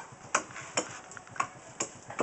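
Hand blades chopping into areca (betel) nuts against wooden blocks: sharp knocks, about two a second in an uneven rhythm.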